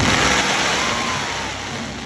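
Fireworks comets launching upward with a loud hissing rush that fades steadily over two seconds.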